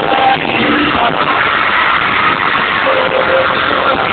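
Live pop music played at a concert, captured on a poor-quality handheld recording: a dense, distorted wash of sound with a few held notes, cut off in the treble.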